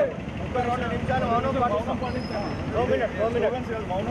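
Men's voices talking over a steady low rumble of street traffic.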